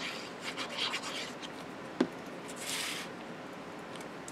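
Decorative paper and card being handled and rubbed by hand. There is a single sharp click about halfway through and a brief rubbing swish of paper just after it.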